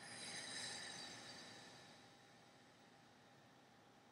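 A slow, audible breath out through pursed lips in a deep-breathing exercise, swelling over about half a second and fading away within about two seconds.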